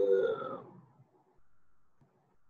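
A man's voice holding a drawn-out vowel that fades away within the first second, followed by quiet room tone.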